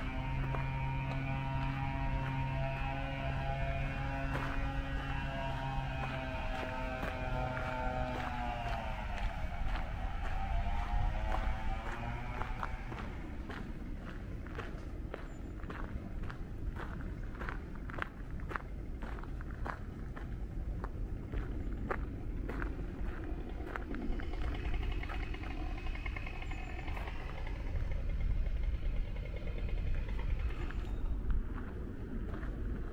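Footsteps crunching along a gravel path, irregular, about one or two steps a second, over a steady outdoor hiss. For the first dozen seconds a steady droning tone with several pitches sounds over them, dipping in pitch and fading out.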